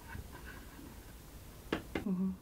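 Small hammer tapping a nail held in pliers into a polystyrene foam board: two sharp taps near the end.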